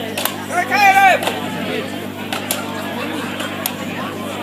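Axes biting into wooden logs in an underhand chop: several sharp chops at uneven intervals. A brief high-pitched call from a voice comes about a second in.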